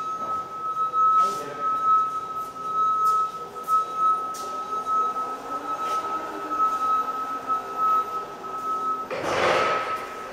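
A steady high-pitched whine holds one pitch over faint, indistinct background sound and a few light clicks. A short burst of rustling noise comes about nine seconds in.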